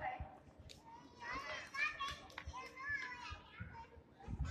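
Children's voices calling out and chattering, high-pitched, from about a second in until shortly before the end.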